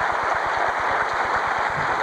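Studio audience applauding, a steady dense clatter of many hands clapping at once.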